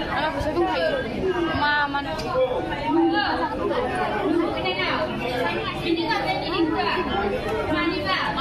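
People talking: dialogue spoken into the stage microphones, with chatter from the audience around it.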